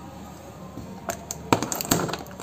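Clicking and crackling of packing tape on a cardboard box being slit and scraped open with the tip of a small screwdriver, a few sharp crackles in the second half.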